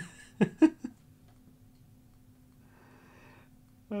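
A man's short laughs in the first second, then quiet room tone with a faint steady hum.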